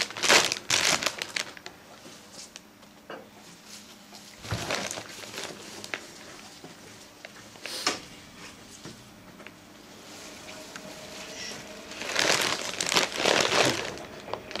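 Outer leaves being snapped and torn off raw artichokes by hand, giving crisp crackling in bursts: at the start, around five seconds in, and a longer stretch near the end. A single sharp click comes about eight seconds in.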